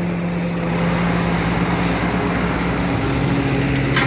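Diesel farm tractor engine running steadily under load while pulling a disc plough through the soil, passing close by. Its note drops lower about two and a half seconds in.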